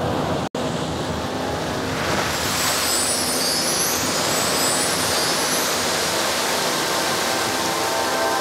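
A loud, steady roaring noise that brightens with a higher shimmer from about two seconds in, with a split-second dropout about half a second in.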